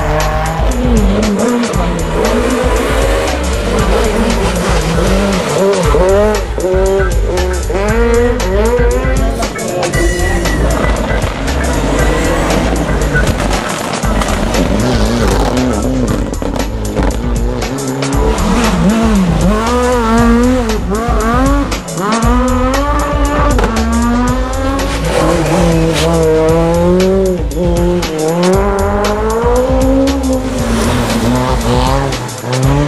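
Rally car engines revving hard, their pitch climbing and dropping again and again through gear changes and throttle lifts, with tyre squeal as the cars slide round a tight tarmac corner.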